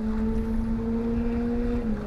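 A boat motor's steady hum: one low tone that dips slightly near the end, over a low rumble.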